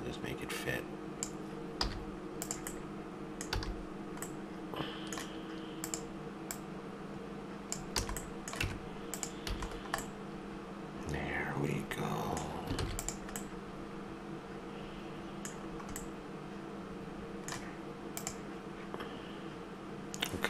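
Computer keyboard keys and mouse buttons clicking in scattered single presses, over a steady low hum.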